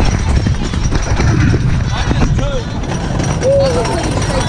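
Rumble of The Racer's wooden roller coaster train running along the track, mixed with wind buffeting the microphone, steady throughout. A couple of short voice calls from the riders come in the second half.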